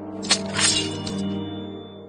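A sword drawn swiftly from its sheath, a sharp metallic swish that leaves a thin high ring hanging in the air, over sustained dramatic background music.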